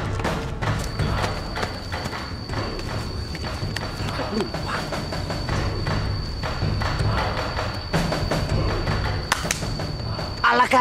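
Drama soundtrack music with a pulsing low beat and repeated percussive thuds, with a thin steady high tone held from about a second in.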